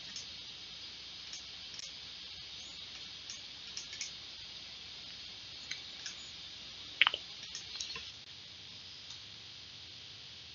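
Scattered light clicks of a computer mouse and keyboard, with a louder, sharper click about seven seconds in, over a steady hiss.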